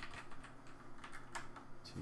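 Computer keyboard being typed on: a quick, irregular run of keystroke clicks as code is entered.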